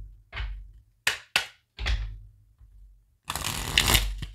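Tarot cards being handled and shuffled by hand over a desk: a few short rustling strokes, then a longer continuous rush of shuffling near the end.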